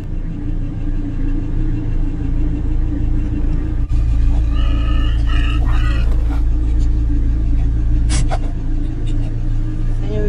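Steady low rumble of an idling vehicle engine, a little louder from about four seconds in. A brief pitched, voice-like sound comes about five seconds in, and a single sharp click about eight seconds in.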